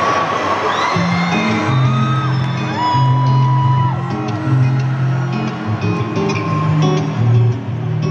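Live band music on electric guitars, with low sustained notes coming in about a second in, over a crowd cheering and whistling.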